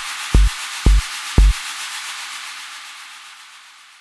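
The end of a background electronic music track: a kick drum beats about twice a second and stops about a second and a half in, leaving a hissing noise wash that fades away.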